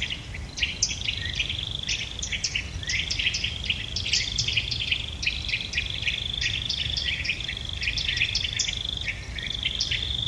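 Outdoor nature ambience: a steady high trill of crickets with many quick bird-like chirps, over a low rumble.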